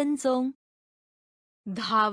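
Only speech: a text-to-speech voice says a single short word, falls completely silent for about a second, then starts another word near the end.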